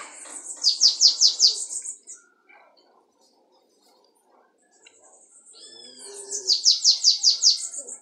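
A caged bananaquit (sibite) singing: two high, fast phrases, each a quick run of falling sweeps, the first at the start and the second near the end after a pause of about three seconds.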